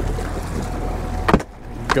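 Boat engine running steadily with a low hum, and a single sharp knock about one and a half seconds in.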